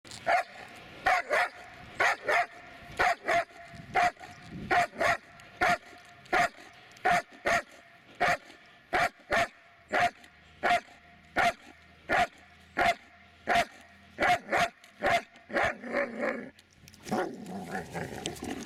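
Dobermann barking over and over in sharp, evenly paced barks, often in quick pairs, about thirty in all, with a rougher, run-together stretch near the end.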